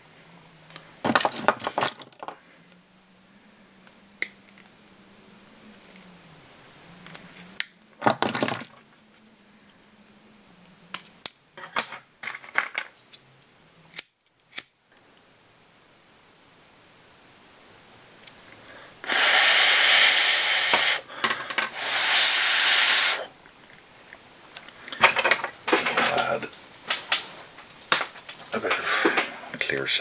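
A lighter flame held to the cut end of a hard plastic fly-tying tube, hissing loudly in two bursts of about two seconds and a second and a half, melting the end into a small burr. Before it, short clicks and snips of tools being handled.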